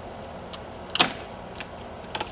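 A piece of wood being broken off by hand: one sharp crack about a second in, with a few lighter clicks before and after.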